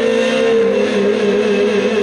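Amplified live music through a PA: a long held note over a sustained keyboard chord, sagging slightly in pitch.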